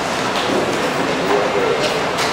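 Steady background hiss of room noise in a conference hall, with a faint voice in the middle.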